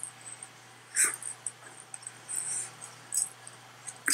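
Soft mouth sounds of someone chewing a bite of baked salmon: a few short, wet smacks about a second apart.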